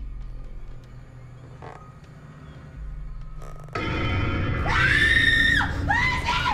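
Low droning suspense music, then a sudden loud swell about four seconds in, followed by a woman's high-pitched scream held for about a second near the end.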